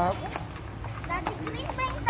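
Children's voices calling and chattering, with a few sharp clops from ponies' hooves on the pavement.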